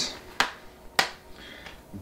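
Two sharp plastic clicks about half a second apart, with a fainter tick later, as a DVD case is handled in the hands.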